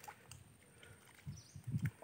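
Footsteps squelching in deep, soft mud: a few low, soft squelches about a second in and again near the end.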